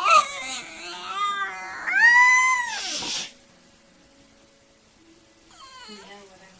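Jack Russell terrier making drawn-out, whining 'talking' vocal noises at its owner, asking for something it wants. Several pitched calls come in the first three seconds, the longest and loudest rising and falling about two seconds in; a short, fainter one follows near the end.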